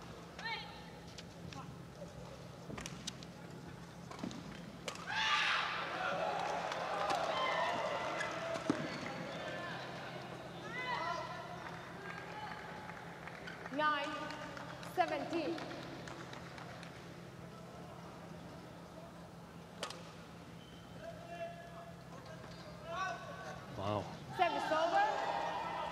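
Arena crowd noise in a large indoor hall: scattered spectator voices and calls over a steady low hum, busiest a few seconds in, with a few sharp clicks.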